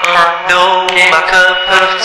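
Music: a chant-like vocal line without clear words, in short bending phrases, over a steady low held note.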